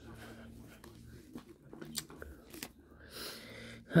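Quiet muttering under the breath, with a few light taps and strokes of a pen on newspaper.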